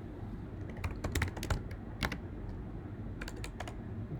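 Typing on a computer keyboard: irregular key clicks, coming in quick runs about a second in and again near the end.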